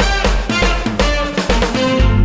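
Upbeat TV game-show logo jingle with a driving drum beat.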